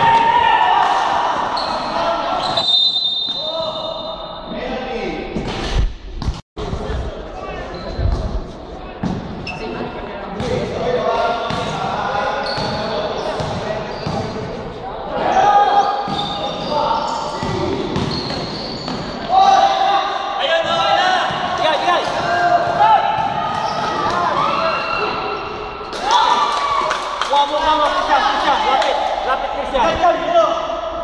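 Basketball being dribbled on a gym court, with players' voices calling out and echoing in a large hall.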